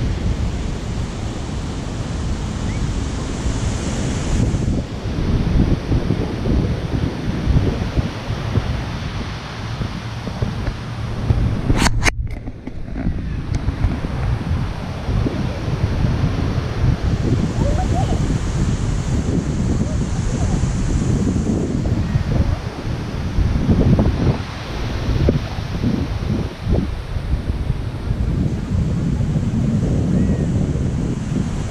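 Wind gusting on the microphone, a heavy fluctuating rumble, with surf behind it. There is a single sharp click about twelve seconds in, followed by a brief dropout.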